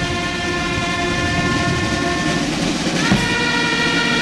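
Military brass band playing slow, long-held chords, changing chord about three seconds in. A short dull boom from the ceremonial artillery salute falls at the same moment.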